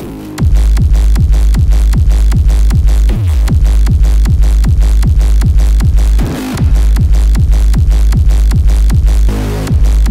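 Bass-boosted hardstyle track: a heavy, distorted kick drum pounding about two and a half times a second, each kick dropping in pitch into deep bass. The kicks break off briefly about six seconds in and again near the end.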